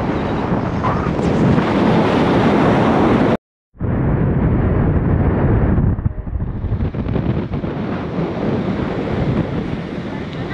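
Wind buffeting the microphone of a vehicle moving along a road, with road and running noise beneath. The sound drops out completely for a moment about a third of the way in and comes back duller.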